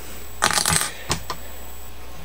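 Small metal fly-tying tools being handled on the bench: a short scrape about half a second in, then two sharp metallic clicks close together.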